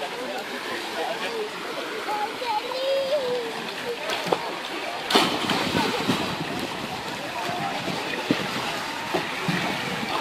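Outdoor swimming-pool ambience: background voices of young people talking and calling out, with a splash into the pool water about five seconds in.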